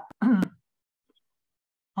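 Speech only: a short, hesitant spoken "uh" with a faint click, then silence.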